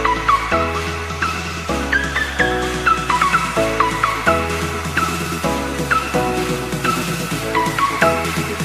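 Background music: sustained chords and a bass line that change about once a second, with short sliding high notes repeating over them.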